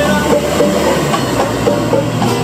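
A small live band playing Cuban music: guitars strummed in a steady rhythm with hand drums, and a brief pitched melody line over them at the start.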